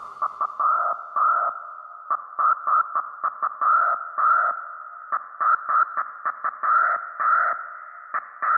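Techno breakdown: with no kick drum or bass, a thin, filtered synth plays a stuttering riff of short pitched stabs confined to the midrange.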